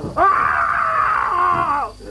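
A woman's long scream, "Aaah!", held for nearly two seconds, wavering slightly and dropping in pitch as it ends.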